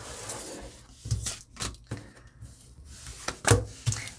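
Tarot cards being handled: a card drawn off the deck and laid on the countertop, with rustling and a few light taps, the loudest near the end.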